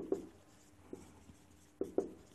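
Marker pen writing on a whiteboard: a few short taps and strokes of the tip against the board, near the start, about a second in and again near the end.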